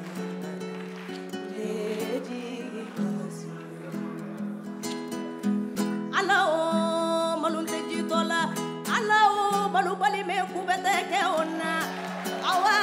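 Acoustic guitar playing a picked melody, with singing coming in over it about six seconds in, its held notes wavering with vibrato.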